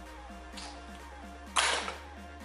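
Background electronic music with a low note repeating about four times a second. Near the end, a short, loud rush of noise cuts across it.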